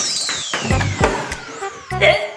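Comedy sound effect for a shocked reaction: a whistle-like tone that shoots up, then slides slowly down over about two seconds with fainter repeats trailing it. Background music with low beats plays underneath.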